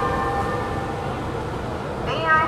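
A train horn sounding a steady chord of several tones that fades out a little over a second in, over the steady low rumble of trains standing at a platform.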